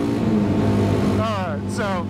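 Kawasaki KLX 300's single-cylinder four-stroke engine running steadily at road speed, with wind rush over the microphone. The engine note shifts slightly about half a second in.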